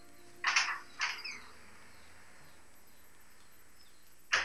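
A bird calling twice in quick succession: two short, harsh calls about half a second apart, the second trailing off downward in pitch, over a faint steady hiss.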